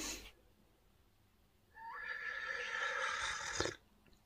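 A long slurp of hot coffee sucked from a mug, lasting about two seconds and starting a little before halfway, with a thin whistling edge that rises at its start; it stops abruptly.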